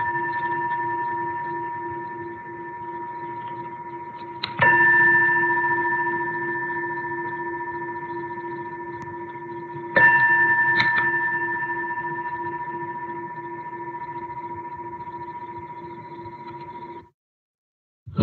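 A Buddhist bowl bell ringing with a clear, multi-toned note. It is struck twice, about four and a half seconds in and again about ten seconds in, and each strike rings out and slowly fades. The ringing cuts off suddenly about a second before the end.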